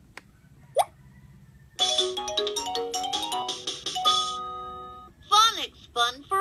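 VTech Letter Sounds Learning Bus electronic toy switching on: a button click, a short rising electronic sweep, then a roughly three-second start-up jingle of bright electronic notes. The toy's recorded voice starts talking near the end.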